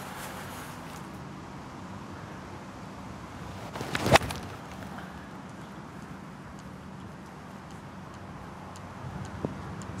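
Golf iron striking the ball on a full approach shot: one sharp, loud crack about four seconds in, with a short swish of the swing just before it, over steady outdoor background noise.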